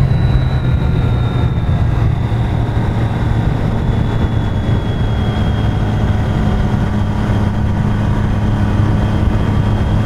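Motorcycle engine running steadily while riding at a constant road speed, with a steady low hum. A thin high whine drifts slowly down in pitch.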